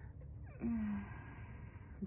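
A woman's short low hum about half a second in, running into a soft, breathy sigh.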